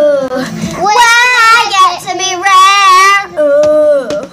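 A young girl singing unaccompanied, holding long notes with a wavering pitch. From about one second in to just past three seconds she climbs to a higher, louder held note.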